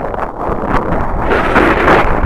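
Wind buffeting the microphone of a YI action camera at the top of a tall chimney, a loud rough rush that gusts and grows stronger toward the end.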